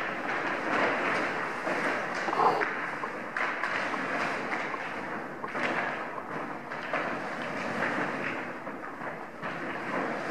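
A large plastic silo-bag sheet rustling and crackling continuously as a horse walks with it draped around her legs, with a few dull thuds.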